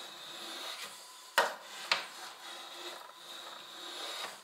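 Spokeshave cutting along a curved wooden boat timber: a continuous scraping of the blade peeling off wood shavings, broken by two sharp knocks about a second and a half and two seconds in.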